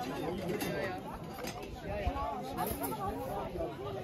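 Several people chatting at once in a small gathering, a blur of overlapping conversation with no single clear voice.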